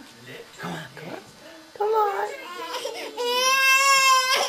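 A baby's voice: a couple of short whiny vocal sounds, then one long high-pitched held note near the end.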